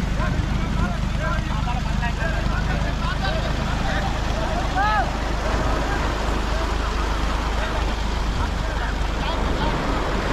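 Many men's voices calling and shouting to one another as a crew hauls in a beach-seine net, short calls coming one after another with a louder one about halfway through, over a steady low engine rumble.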